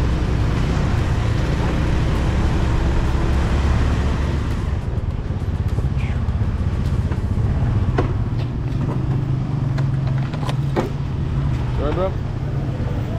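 Street traffic noise: nearby vehicle engines running with a steady low rumble, the wider hiss easing off about halfway through, and a few sharp clicks near the end.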